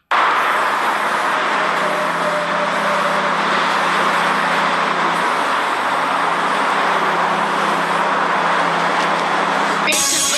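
Aerosol spray paint can hissing steadily as paint is sprayed onto concrete, a continuous loud hiss that stops abruptly near the end.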